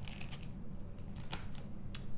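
Handling noise from a bagged comic book being lifted off a display stand and swapped for the next issue: a few light clicks and rustles of the plastic sleeve over a faint steady hum.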